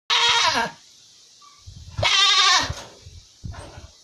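A goat bleating twice, two loud quavering calls each about half a second long, the second about two seconds in.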